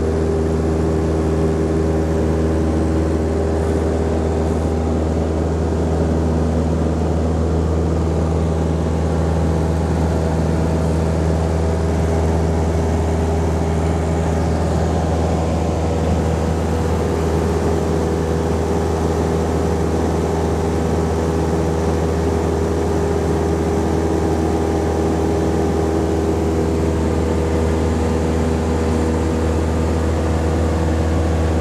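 Piston engine and propeller of a high-wing light aircraft, heard from inside the cabin in flight. It is a steady, unchanging drone, deepest and loudest in its low rumble.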